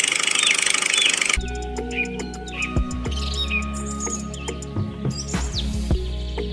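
A high, steady whir from a toy tractor's small electric motor cuts off suddenly about a second and a half in. Background music follows, with low held notes, light clicks and bird chirps.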